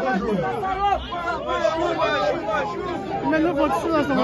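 Speech: a man speaking into a handheld microphone, with chatter from the people around him.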